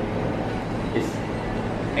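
Steady low background rumble of room noise, with one brief word.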